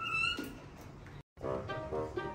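A baby monkey gives one short, high, slightly rising squeal right at the start. After a brief cut-out a little past the middle, background music begins.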